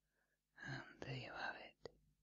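Whispering for about a second, the words not made out, followed by one sharp short click.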